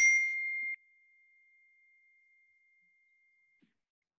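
A single bright electronic ding, like a computer or video-call notification chime. It is cut off sharply after under a second, and a very faint ring lingers for a few seconds after it.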